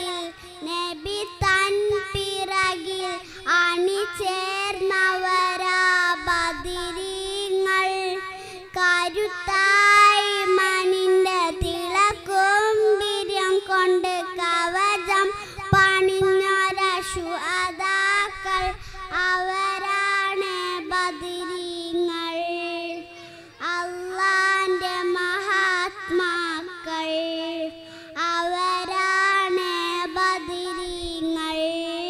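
A young girl singing solo into a microphone, one voice in long held phrases that glide and waver in pitch, with short pauses for breath.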